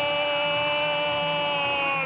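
Arabic football commentator's long drawn-out shout of "goal" ("gooool"), held on one steady pitch for the whole stretch, announcing a goal just scored.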